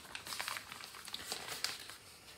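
Plastic packaging of a cross-stitch kit crinkling faintly as it is handled and turned over, in small irregular crackles.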